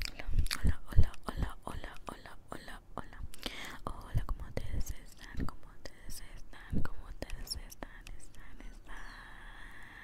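Inaudible whispering with wet mouth clicks, right up against a handheld recorder's microphones, mixed with a few low thumps from hand movements close to the recorder; the thumps are loudest near the start, about a second in and about seven seconds in.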